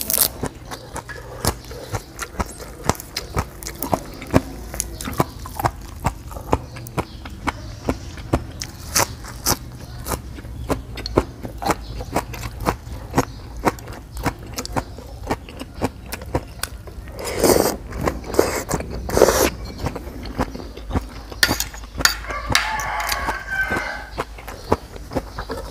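Close-miked chewing of crunchy squid salad and raw greens: steady wet crunching clicks, about two to three a second, with two louder noisy bursts about three-quarters of the way in.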